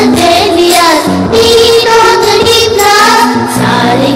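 A recorded children's song about sunflowers: singing over a backing track with a steady beat.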